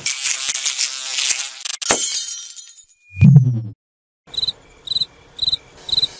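Logo-intro sound effects: a bright, shimmering whoosh lasting about two seconds with a sharp click near its end, a short low boom just after three seconds in, then four short high blips about half a second apart.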